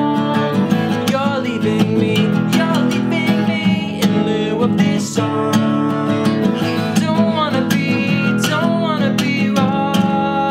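Acoustic guitar strummed steadily, with a man singing over it.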